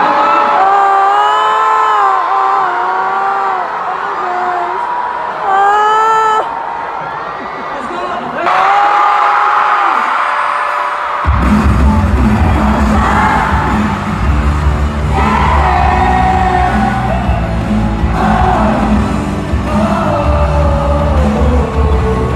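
Live pop concert in an arena: high voices singing and screaming with no bass at first, then about eleven seconds in a pop song starts abruptly over the PA with heavy bass, with singing and crowd screams over it.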